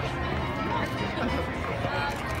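Background chatter of an outdoor crowd, with faint music underneath.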